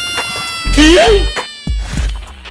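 Comedy sound effects laid over the edit. A held horn-like note fades out. Then, just under a second in, comes a short loud cry whose pitch bends up and down, followed by a couple of sharp clicks.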